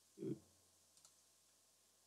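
Near silence, broken by a soft short sound just after the start and a faint click about a second in: computer mouse clicks.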